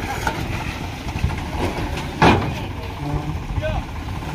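Diesel tractor engine running steadily to power its hydraulic tipping trolley while it unloads a load of sand. One short, loud bang comes about two seconds in.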